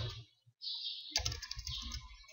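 Typing on a computer keyboard: a keystroke, a brief pause, then a run of quick keystrokes from about half a second in.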